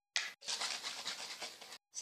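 Scratchy rubbing and handling noise from a plastic spray bottle held against the phone's microphone: a short scrape near the start, then about a second of continuous scratching.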